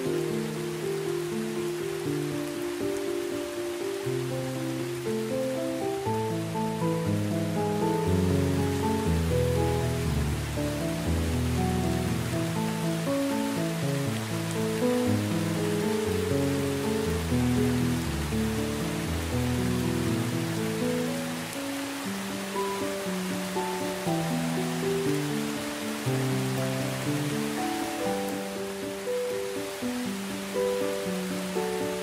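Slow, calm instrumental music, a melody of held notes with deeper bass notes through the middle, mixed over the steady hiss of heavy rain.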